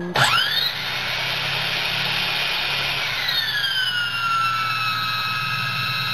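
Hand drill spinning a car alternator's pulley through a socket adapter: it spins up quickly at the start and runs with a steady whine. About three seconds in, the whine drops in pitch as the alternator starts generating and loads the drill down.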